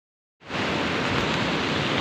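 Steady rushing of a wide, muddy, fast-flowing river below, starting abruptly about half a second in.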